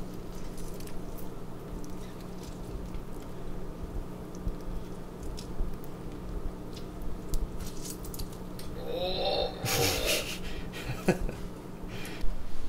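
A lime being squeezed by hand over a bowl of cut papaya: small wet squelches and clicks over a steady low hum. About nine seconds in comes a brief, louder squeaky sound with a rush of noise.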